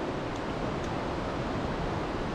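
Steady rushing outdoor background noise, with a few faint ticks.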